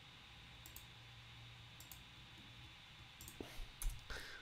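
Quiet room tone with a few faint, separate clicks spread through the pause, and a soft low thump near the end.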